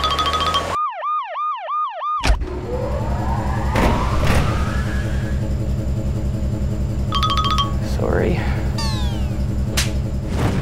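Electronic beeping, then a whooping alarm siren of quick repeated rising sweeps, about four a second, for over a second. It gives way to rhythmic background music with a steady beat, with more beeps and sweeping whistle glides over it.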